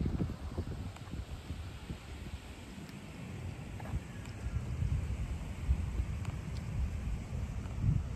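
Wind buffeting the microphone: a low, uneven rumble that grows somewhat louder after the middle, with a few faint ticks.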